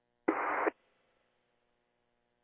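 A half-second burst of radio static, like a squelch burst on a voice channel, that starts and cuts off abruptly, over a faint steady electrical hum.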